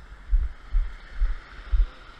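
A small waterfall and creek running with a steady rush of water. Over it come four dull, low thumps about two a second, the footsteps of the person wearing the camera.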